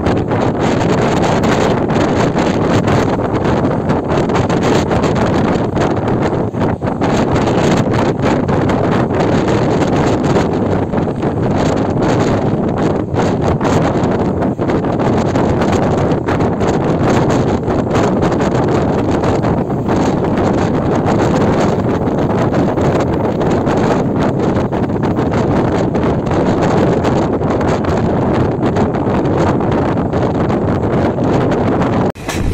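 Steady running noise of a passenger train, heard from an open coach door: wheels rumbling on the rails, with wind buffeting the microphone.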